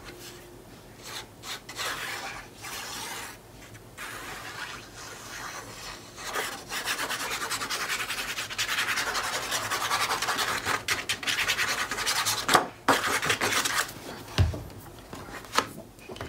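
Rapid back-and-forth rubbing on paper, strongest for about six seconds in the middle, amid softer paper-handling noises. A sharp click and a low knock come near the end.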